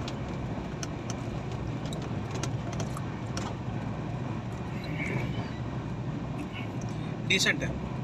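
Steady rumble of a passenger train running at speed, heard from inside the coach, with a few faint clicks and rattles.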